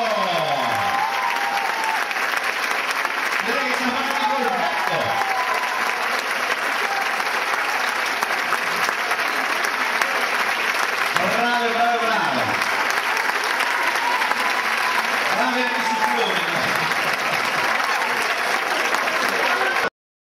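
Audience applauding steadily, with voices calling out over the clapping four times, each call falling in pitch.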